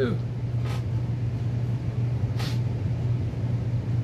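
A steady low background hum, with two short soft hisses, one just under a second in and another about two and a half seconds in.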